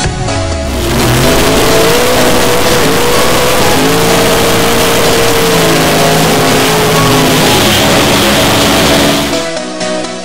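Pro Stock drag racing car's V8 engine held at high revs through a smoky burnout. It is loud and sustained for about nine seconds and cuts off sharply near the end, with music underneath.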